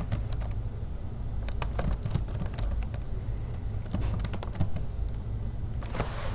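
Typing on a computer keyboard: keystrokes in short runs with brief pauses, over a low steady hum.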